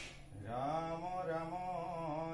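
Assamese Vaishnava nam-prasanga: slow devotional male chanting, one line ending at the start and a new drawn-out phrase beginning about half a second in, its pitch rising and then gliding.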